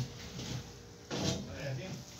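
A short stretch of low, indistinct speech a little past the middle, with quiet room sound either side.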